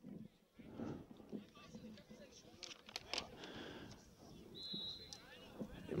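Faint voices of players and onlookers talking and calling out around an outdoor football pitch, with a few sharp claps or knocks in the middle. About five seconds in comes a short, high referee's whistle blast, the signal that the penalty kick may be taken.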